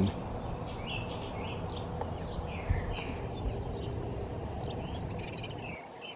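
House sparrows chirping: many short, high chirps one after another, over a steady low background rumble that drops away near the end.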